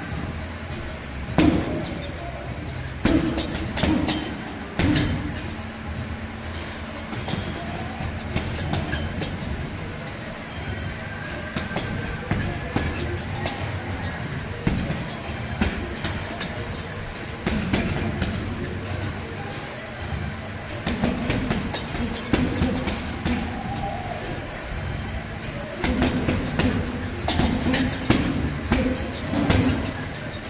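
Boxing gloves punching a hanging heavy bag: sharp thuds in quick clusters of combinations with pauses between, over background music.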